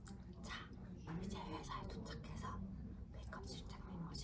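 A woman speaking softly, close to a whisper.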